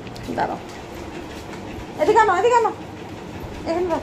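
A woman's voice in two short stretches of speech, about two seconds in and again near the end, over a steady low background rumble.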